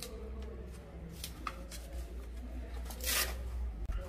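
Dry baobab fruit pulp and woody shell pieces being handled and scraped on a plastic tray: light rustling with a few small clicks, and one louder scraping rustle about three seconds in.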